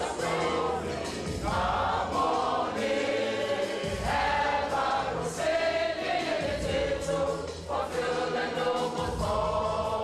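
Mixed choir of men and women singing a gospel-style song together, with a low accompaniment underneath.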